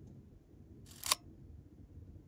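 A single short, sharp click about a second in, over a faint low steady hum.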